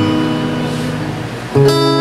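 Acoustic guitar chord ringing and slowly fading, then a fresh strummed chord about one and a half seconds in.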